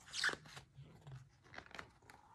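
Paper rustling as a picture book's page is turned: a short swish just after the start, then faint crackles.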